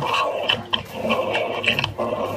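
An animatronic Monster Book of Monsters, a fur-covered book with teeth, growling continuously in its wire cage, with short sharp clacks through the growl.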